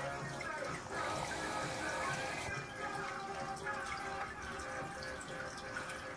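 Aquarium water trickling and splashing steadily, with a louder hiss of water for about a second and a half near the start. Music plays in the background.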